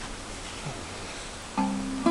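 Black archtop acoustic guitar being fingerpicked in a blues style: quiet room for about a second and a half, then the first plucked notes start and ring on near the end.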